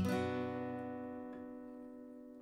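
A single strum of a B minor chord on a Yamaha acoustic guitar, left to ring and slowly fading away.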